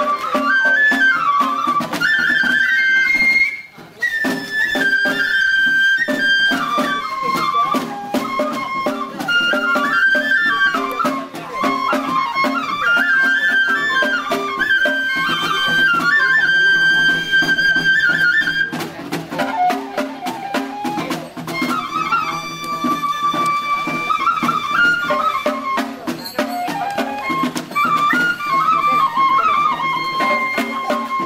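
Japanese festival music for the Ise Daikagura lion dance: a bamboo transverse flute (fue) playing a stepping, ornamented melody, with a brief break about four seconds in. Drum strokes sound faintly underneath.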